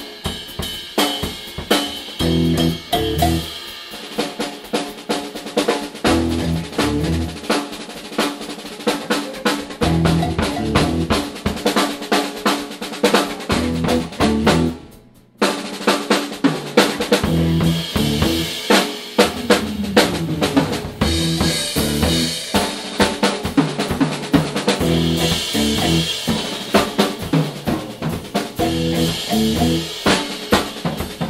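A Yamaha rock drum kit played fast and busy, with snare, bass drum and cymbal hits packed together and low pitched notes running underneath. The playing cuts out suddenly for about half a second halfway through, then comes straight back in.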